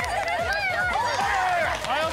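Several women's voices calling out and cheering over one another, overlapping without a break, as a team shouts encouragement during a relay race.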